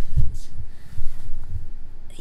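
A few dull, low thumps with rumble right at the microphone, about a quarter second in, again around a second in and once more near a second and a half: handling or knocking noise on the recording device as the shot is moved in close.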